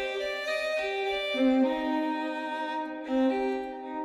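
Sampled Stradivari violin from the Cremona Quartet library, played from a keyboard through Galactic Reverb. Slow sustained notes overlap, several at a time, and change every second or so.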